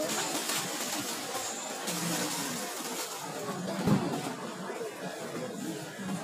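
Indistinct background noise inside a shop, with faint far-off voices and a single thump about four seconds in.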